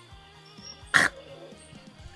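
A woman's single short choking cough about a second in, over faint background music.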